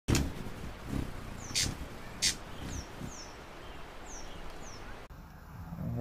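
Bird calls: about five short, high chirps, each falling in pitch, spaced through the middle of the clip over a steady background hiss. A few sharp ticks come at the start and about two seconds in, the loudest being the last. The hiss cuts off abruptly near the end.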